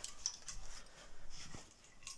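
Faint handling noise: a few brief rustles and light ticks, with one soft thud about one and a half seconds in.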